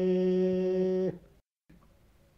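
A man's voice, unaccompanied, holding one long sung note of an Aromanian folk song. The note ends with a slight fall about a second in, leaving only faint recording hiss.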